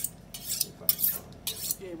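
Ham-slicing knife drawn along a honing steel, metal scraping on metal in quick strokes, about two a second.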